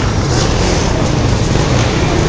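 Suzuki LT-Z400 quad's single-cylinder engine running as the quad is wheelied, mixed with wind buffeting the camera microphone: a steady, loud rush with no clear pitch.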